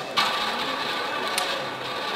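Roulette ball launched around the wheel, rolling steadily in its track; the sound starts suddenly just after the start. A single sharp click about a second and a half in.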